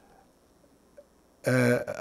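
Near silence with a faint click about a second in, then a man's short vocal sound held at one steady pitch for under half a second, just before his speech resumes.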